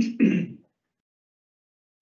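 A person clearing their throat, twice in quick succession, in the first half-second.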